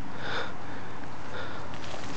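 A short sniff close to the microphone about a quarter second in, with a fainter one about a second later, over a steady background hiss.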